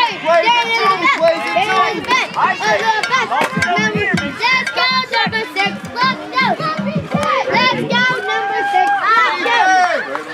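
Many children yelling and chanting at once, high overlapping voices with some drawn-out shouts.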